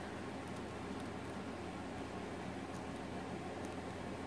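Quiet room tone: a steady faint hiss with a low hum underneath.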